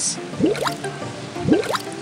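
Background music with two quick rising, bubbly 'bloop' sound effects like water drops, about a second apart.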